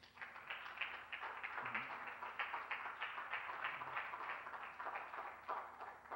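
Audience applauding: a dense, steady patter of many hands clapping that dies away near the end.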